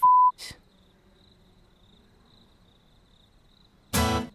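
A short, loud censor bleep, one steady tone, right at the start, likely covering the end of a swear word. Then near quiet with a faint, high, on-and-off chirping. Right at the end comes a loud strum on an acoustic guitar.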